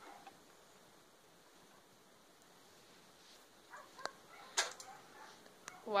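Near silence, then a few faint clicks and one sharper snap a little past four and a half seconds in, as the broken space heater's bare wires are pushed into the wall outlet.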